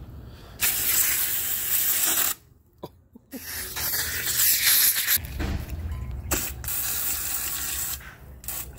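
AC evaporator flush gun spraying brake cleaner under air pressure against the inside of a transmission case, a loud hiss with splatter. One burst of under two seconds, a short pause, then a longer spray of about five seconds with a brief break near the end.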